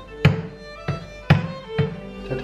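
A kitchen knife's tip tapping sharply on the lid of a vacuum-sealed caviar tin, four times, over background music with violin.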